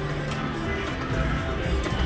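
Top Dollar slot machine spinning its reels, with steady electronic tones that run on under the wider jingling of the casino's machines, and a couple of faint clicks.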